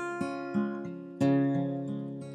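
Acoustic guitar played alone, chords picked and strummed and left ringing, with a louder strum a little over a second in that fades away.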